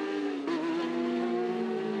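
Superstock racing motorcycle engine running hard at high revs, a steady high engine note that dips slightly in pitch about half a second in.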